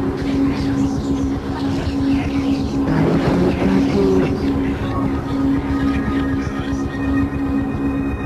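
Lo-fi experimental noise music from a cassette: a steady droning tone over a dense low rumble, with a noisy surge about three seconds in and thin high tones coming in past the halfway point.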